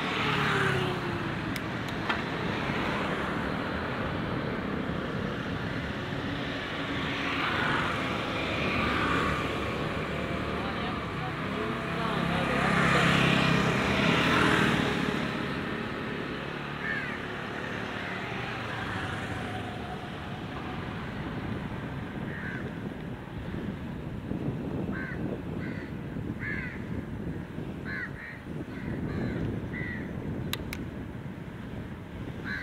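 Street ambience heard from a moving bicycle: a motor scooter passes at the start, a louder motor vehicle passes about halfway through, and crows caw repeatedly over the last several seconds.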